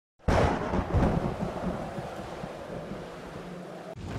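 Thunder cracks in suddenly just after the start, swells again about a second in, then rolls on and slowly dies down to a low rumble.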